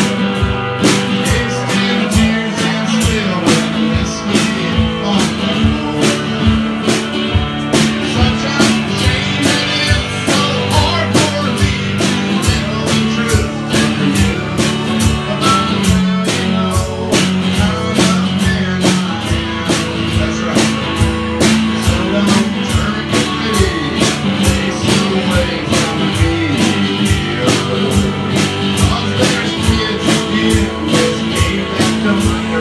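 Live country-rock: a strummed acoustic-electric guitar and a drum kit keeping a steady beat, with a man singing.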